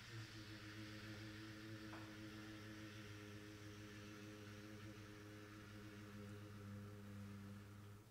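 Faint, steady low hum with a hiss above it, a sound-effect rumble played in place of the muffled rumble just described; it cuts off abruptly at the end.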